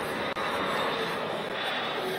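Jet aircraft engines running: a steady, even rush of noise.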